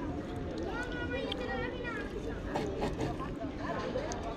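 Voices of people talking nearby, with a few short clicks of a fork and knife on a wooden board partway through.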